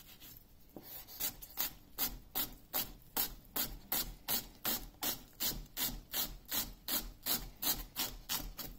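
Chef's knife chopping an onion on an end-grain wooden cutting board. About a second in, a steady rhythm of crisp knife strokes on the wood begins, about two and a half a second.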